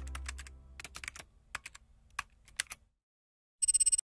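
Computer-keyboard typing sound effect: scattered key clicks as text is typed out, over the fading tail of a synth chord. Near the end comes a short, rapid run of loud clicks.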